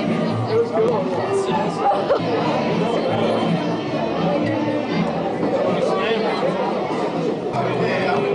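Many people talking at once in a crowded room, a steady babble of voices with music playing underneath.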